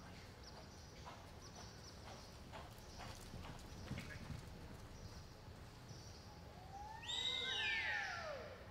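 Faint, uneven hoofbeats of a horse loping on soft arena dirt. About seven seconds in, a horse whinnies loudly in a falling call.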